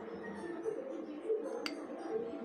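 A metal spoon clinks once, sharply and briefly, against a glass bowl as food is spooned into it, over background music.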